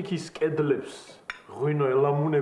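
A man speaking in Georgian, drawing out a long sound near the end, with a short clink of tableware about a second in.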